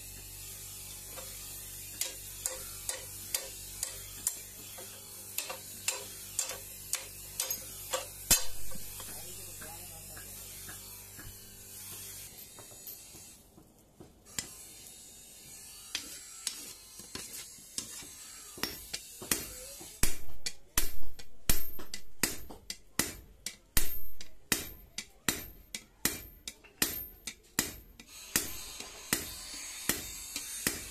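Hand hammer striking hot steel on an anvil in an even rhythm: lighter blows over a steady low hum in the first part, then, after a quieter stretch, heavier ringing blows about two a second.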